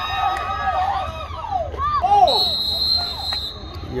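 Spectators' voices shouting, then about two seconds in a referee's whistle sounds one steady blast of just over a second, stopping play for a foul that draws a yellow card.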